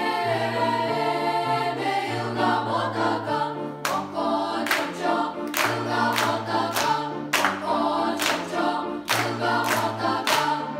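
Youth choir singing a Lithuanian folk-song arrangement. From about four seconds in, sharp hand claps come in an uneven rhythm along with the singing.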